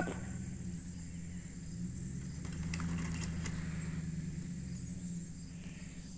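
A vehicle engine running low and steady as it backs up on a chain pull, swelling a little in the middle, with a few faint clicks. Crickets chirp in a steady high buzz throughout.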